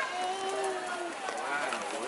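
A person's voice with no clear words: one held note lasting about a second, then a short rising-and-falling vocal sound near the end.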